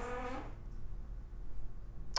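Quiet room tone with a steady low hum, after a brief murmur of a voice in the first half second.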